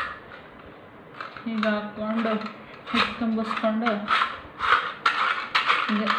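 Stainless-steel chakli press being handled: sharp metal clicks and clinks as the steel cylinder is fitted into the lever frame, one sharp click at the start and a run of them in the second half.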